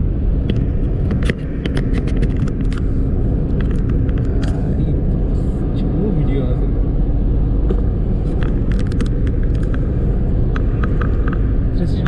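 A car driving at speed on a highway, heard from inside the cabin: a steady low road and engine rumble with frequent small clicks and rattles.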